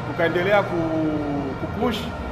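A man speaking, with one long held vowel in the middle.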